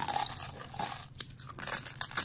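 Crunching and chewing as seahorses are bitten and eaten: a run of irregular crisp crunches and clicks.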